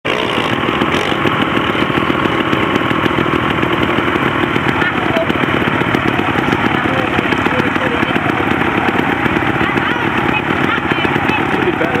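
Trials motorcycle engine running hard under load as the bike climbs a steep, rocky hillside, a loud, steady, buzzy sound.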